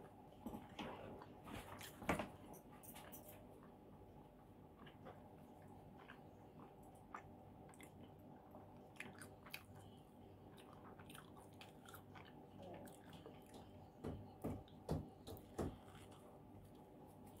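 Faint close-up chewing of bacon cheese pizza, with small wet mouth clicks, and a few louder bites into the crust in the last two seconds.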